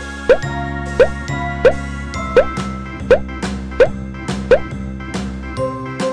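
Cheerful children's background music with a run of eight cartoon plop sound effects, evenly spaced about 0.7 s apart, each a short upward-sliding blip.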